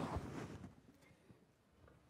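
Quiet concert hall room tone: a fading, echoing remnant of sound and a soft low thump in the first half second, then only faint hall noise.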